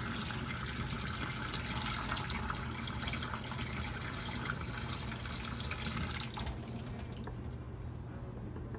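Water running steadily from a tap, a continuous hiss that cuts off about six seconds in, over a steady low hum.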